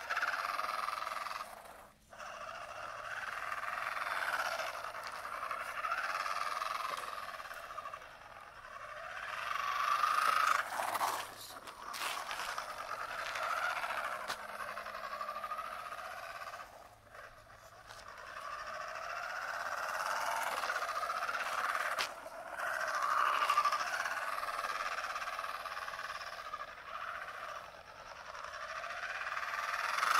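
Brushed 35-turn electric motor and gear drive of a small 3D-printed RC car whining, the pitch rising and falling as the car speeds up and slows, dropping away briefly a few times.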